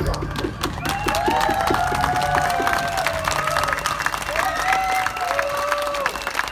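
Audience applauding and cheering, with rising and falling whoops over the clapping, just as the dance music stops.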